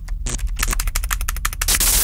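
Rapid, irregular clicking over a steady low hum, with a short burst of hiss near the end, set in an electronic music and sound-effect bed.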